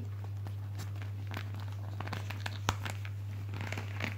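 Faint rustling and small clicks of a leather watch strap being worked off a padded watch cushion, with one sharper click about two and a half seconds in. A steady low hum runs underneath.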